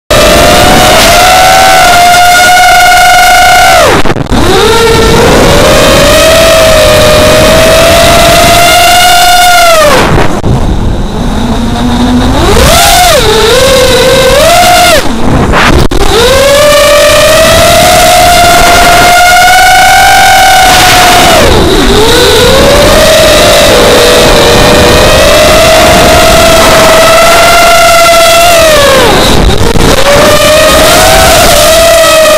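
The RCX 2206 brushless motors and KK5040 props of an FPV quadcopter, recorded by its onboard camera: a loud whine whose pitch rises and falls with the throttle. It dips sharply about four seconds in, again for about two seconds around ten seconds, briefly near sixteen and twenty-two seconds, and near the end, as the throttle is cut.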